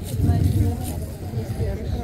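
Indistinct voices of people talking in a gathered audience, over a steady low hum.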